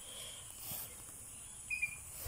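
Faint outdoor background of insects, with a steady high hiss and a brief high chirp near the end.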